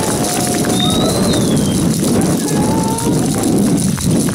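Strong wind buffeting the microphone: a loud, rough, unsteady rumble with uneven low thuds, with a few faint voices calling above it.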